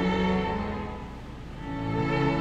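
A string ensemble of two violins, cello and double bass playing a classical Allegro, with held bowed notes. The playing falls back about a second in and comes in strongly again near the end.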